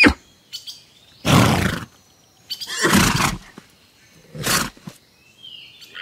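A horse snorting three times, each a short breathy burst of noise, about one to two seconds apart.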